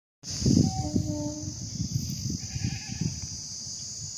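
Open-air field sound: wind buffeting the microphone under a steady high-pitched drone, with a short, faint livestock call about half a second to a second in.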